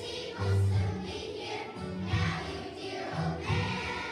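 A choir of young children singing a song together over a musical accompaniment with a recurring low bass pulse.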